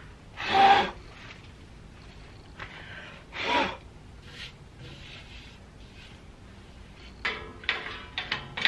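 Short rubbing and scraping sounds of hands handling wood and metal on a band saw table, with no motor running: a louder scrape about half a second in, another about three and a half seconds in, and a few light clicks near the end.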